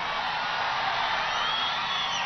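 Large rally crowd cheering in a steady wash of many voices, with a faint whistle near the end.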